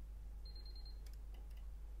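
Megger multifunction tester giving one short high-pitched beep while it runs a prospective fault current loop test, over a faint low hum.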